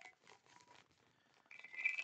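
Faint rustling and light clicks of hand-rolling a cigarette with rolling paper and loose tobacco, with a brief louder sound near the end.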